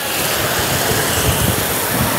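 Steady sizzling hiss from a hot sauté pan of shallots, garlic and bacon as dry white wine goes in.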